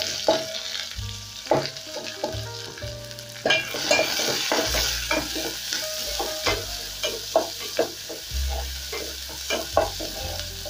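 Sliced red onions sizzling in hot cooking oil in an aluminium pot. A wooden spoon stirs them, scraping and knocking against the pot again and again.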